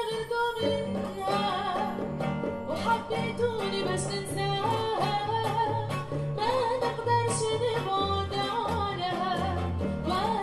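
A live acoustic ensemble: a woman sings a wavering, ornamented melody, accompanied by an acoustic guitar, a bowed cello and a hand drum.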